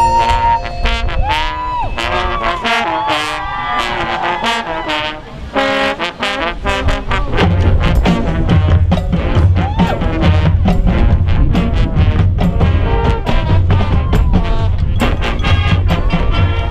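High school marching band playing: brass phrases over percussion, with a short dip about five seconds in, then louder full-band playing with a strong, steady low beat from about seven seconds in.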